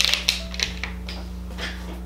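Light clicks and clatter of small plastic makeup tubes being handled and set down, sharpest right at the start, over steady background music.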